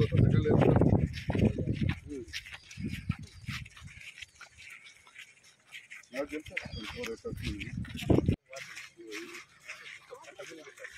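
People talking outdoors in bursts, loudest in the first two seconds and again around six to eight seconds, cut off abruptly a little after eight seconds.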